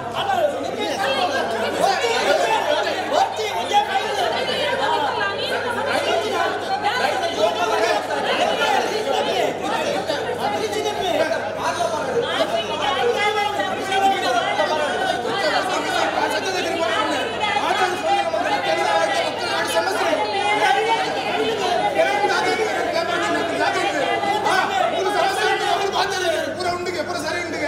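Many men's voices arguing over one another at once, a heated group confrontation with no single voice standing out, in the reverberation of a large hall.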